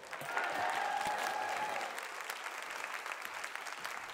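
Audience applauding, the clapping slowly dying down over the last couple of seconds.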